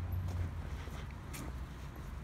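Footsteps of a person walking, a few light irregular steps over a low steady rumble.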